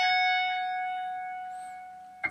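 ESP electric guitar note ringing out and slowly dying away. It is the final pulled-off note of a hammer-on/pull-off lick, the 14th fret of the high E string, and it fades to almost nothing over about two seconds.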